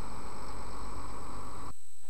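Steady rushing background noise with a low rumble and no clear tone or rhythm, cutting off abruptly near the end.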